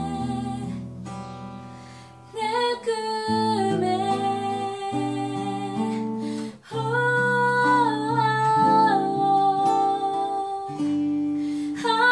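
A woman singing with acoustic guitar and keyboard accompaniment. A held note fades over the first two seconds, and the singing picks up again about two and a half seconds in, with a brief break a little past the middle.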